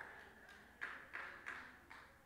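A man's amplified voice echoing away in a large room, then four faint short taps about a third of a second apart.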